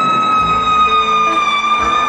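Live keyboard solo: one long held lead synthesizer note that sags slowly in pitch and starts to waver with vibrato toward the end, over quiet band backing.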